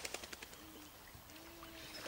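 A faint, low two-note call, the second note longer than the first, like a bird cooing. Small water splashes in the first half second.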